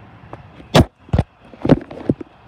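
Handling noise from a handheld phone being swung around and brushed against clothing: three loud thumps about half a second apart on the microphone.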